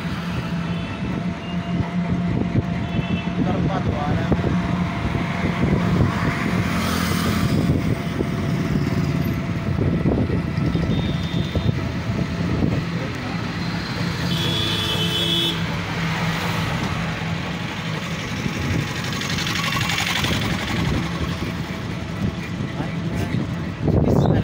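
Engine and road noise from a moving vehicle: a steady low hum under a constant rush. Short, high beeps cut in about a second in and again around halfway through.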